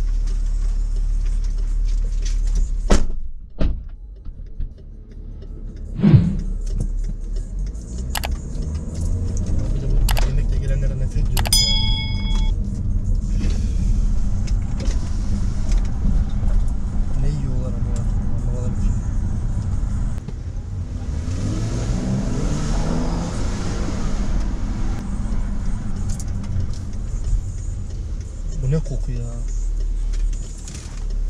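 Cabin noise of a BMW SUV pulling away and driving on city streets: steady engine and road rumble. There is a sharp thump about six seconds in, a short electronic chime a few seconds later, and the engine and road noise swell for a few seconds past the middle.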